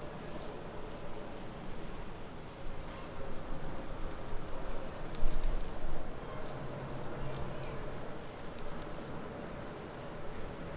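Pontoon boat's outboard motor running at low speed, with a steady low hum, under a gust of wind on the microphone about five seconds in.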